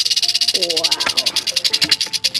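A rattlesnake rattling its tail: a dry, high buzz that pulses rapidly, the defensive warning of a disturbed snake, with background music under it.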